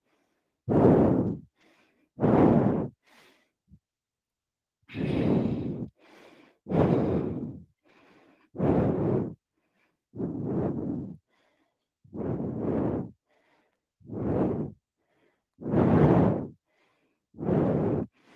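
A woman breathing hard into a close headset microphone while holding a plank, one audible breath about every second and a half to two seconds, with one longer pause about three seconds in. The breathing is the effort of holding the plank.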